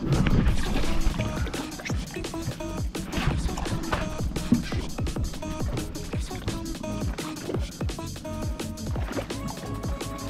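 Background music with a steady beat of about two beats a second.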